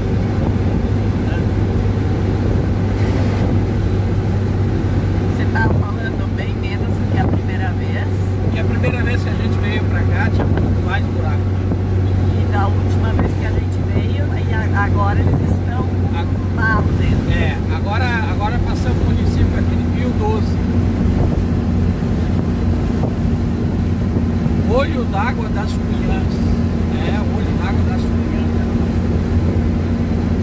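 Steady low drone of a Mercedes-Benz 1218 truck's diesel engine heard from inside the cab at steady cruising speed, with road and tyre noise.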